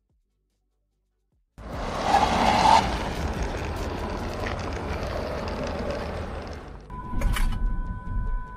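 Silence, then about a second and a half in the sound of a Genesis GV60 electric car running on a test track cuts in sharply: tyre and wind noise, loudest for the first second, then steady and fading. Near the end a steady two-note electronic tone comes in, with a few sharp clicks.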